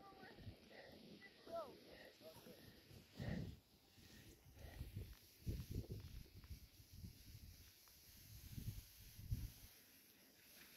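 Mostly quiet, with faint distant voices calling in the first couple of seconds and low rumbles now and then.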